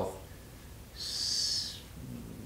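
A short, high hiss starting about a second in and lasting under a second.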